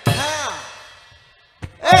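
A man's loud, drawn-out vocal cry through a stage microphone. Its pitch rises and then falls, and it fades away over about a second. Near the end comes a short, loud "eh".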